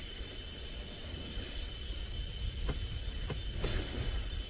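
Steady low rumble and hiss with a faint, thin high whine, and a couple of faint clicks about three seconds in.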